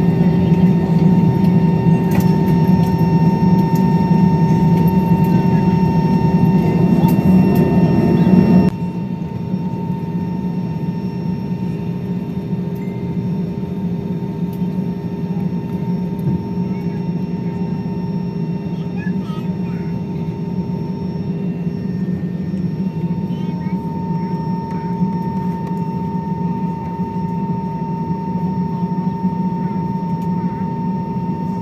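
Steady jet-engine hum heard inside the cabin of a jet airliner on the ground, a constant drone with a few steady tones through it. It drops abruptly in loudness about nine seconds in, then runs on evenly at the lower level.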